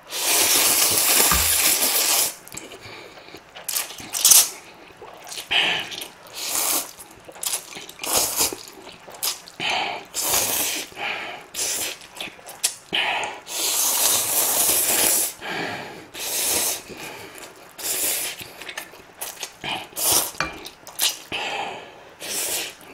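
A man slurping spicy instant ramen noodles in repeated noisy pulls: a long slurp of about two seconds right at the start, another long one about two-thirds of the way through, and many shorter slurps between.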